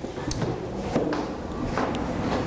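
Classroom handling noise: a few light knocks and rustles over a steady background murmur of a room full of children.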